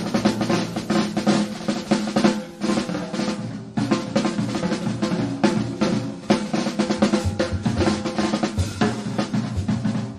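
Jazz drum kit playing a solo break, with snare rolls, bass drum and cymbal strikes coming thick and fast.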